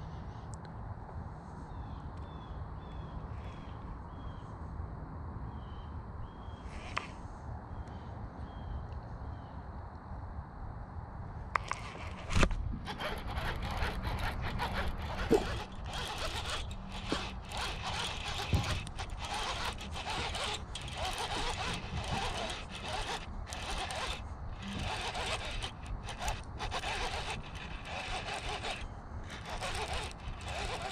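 Rod, reel and handling noise while a hooked northern pike is fought in: irregular rustling and scraping with sharp knocks that starts about a third of the way in, after a quieter stretch with faint high chirps.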